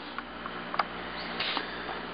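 Low room noise with a few faint, short clicks and light taps.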